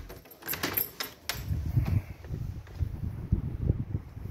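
A balcony door being opened: a quick run of metallic clicks and rattles from its handle and latch in the first second or so. Then an uneven low rumble of wind buffeting the microphone once outside.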